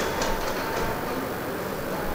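Steady background noise of a room, with a faint steady hum and a few faint ticks right at the start.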